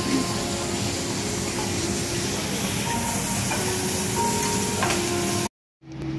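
Food sizzling loudly and steadily on a teppanyaki griddle as a chef turns and chops chicken on it; the sound cuts off suddenly near the end.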